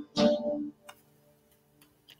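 The last strummed chord of a song on an acoustic guitar, ringing out and fading away within about a second, then a couple of faint clicks.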